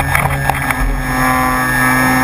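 Electric RC model plane's motor running with a steady high whine, heard from a camera on board the plane, with wind rumble on the microphone.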